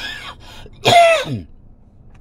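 A man clearing his throat once, about a second in: a short, loud, rasping sound that falls in pitch.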